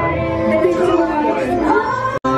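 Attraction soundtrack played over the ride's speakers: an animated character's voice over background music.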